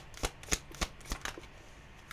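A tarot deck being shuffled by hand: a quick, regular patter of cards slapping together, about three a second, that stops a little over a second in.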